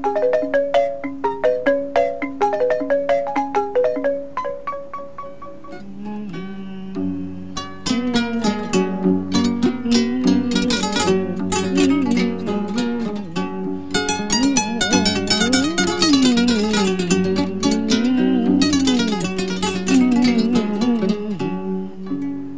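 A balafon, the Mandinka wooden xylophone, played in quick repeating patterns. About six seconds in it gives way to a kora plucked in rapid runs, with a voice singing a winding melody over it.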